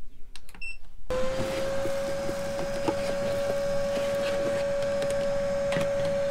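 A few small clicks, then a Hoover canister vacuum cleaner is switched on about a second in. Its motor spins up quickly and then runs steadily, a level whining tone over the rush of suction.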